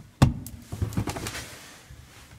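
A sharp knock about a fifth of a second in, then a few lighter knocks and scuffs of handling on bare wooden floorboards beside a saved round cutout of old plaster ceiling.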